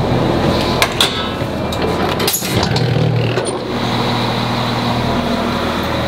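Diesel train running: a steady engine drone and rumble with a few knocks about a second in, and a sudden break about two seconds in.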